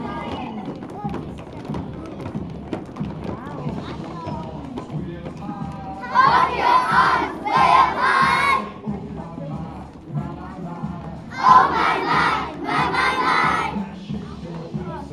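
A group of young children shouting a chant loudly in unison, twice, each time two phrases of about a second, over music and a murmur of voices.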